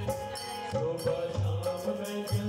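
Live Indian devotional folk music from a small stage ensemble: hand drums keep a steady beat under held melodic tones.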